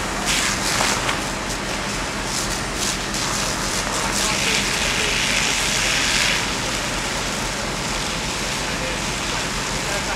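Water jets from fire hoses hissing as they spray onto smouldering hay bales, with a louder surge of hiss lasting about two seconds from about four seconds in. A steady low engine hum runs underneath.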